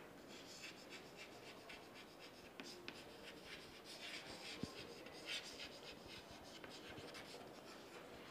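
Chalk writing on a chalkboard: a faint run of short scratching strokes with a few sharper taps as letters are formed.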